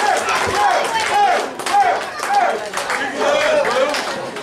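Wrestling crowd shouting and clapping, with high voices calling out in a quick repeated rhythm about twice a second.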